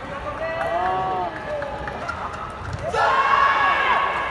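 Court shoes squeaking on the synthetic badminton court mat as the players move and lunge during a rally, with short squeals early on and a louder, longer squeal in the last second.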